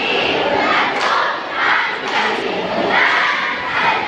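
A bench-cheer squad shouting a cheer together: loud group yells that come in rhythmic bursts about once a second.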